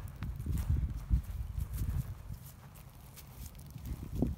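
Footsteps on dry grass and dead leaves, with a low rumble that fades about halfway through.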